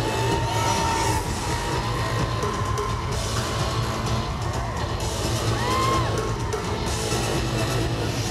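Live pop music with a drum kit, played loud through an arena PA.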